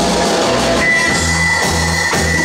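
Live band playing, with a repeating bass line under drums, electric guitar, keyboard and horns; a high note is held from about a second in.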